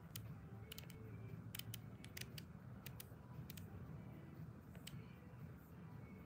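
Quiet room tone with a low hum and a scatter of small, sharp clicks at irregular intervals, most of them bunched in the first few seconds.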